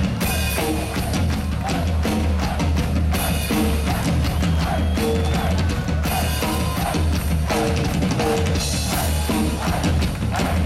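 Live ska-rock band playing loudly through the PA: a drum kit drives a steady beat on bass drum and snare, under electric guitar and a heavy, pulsing bass line.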